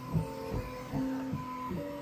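Bambu Lab X1 Carbon 3D printer printing at its standard speed setting. Its motors sing in steady tones that jump to a new pitch every few tenths of a second as the toolhead changes direction around the facets of the print.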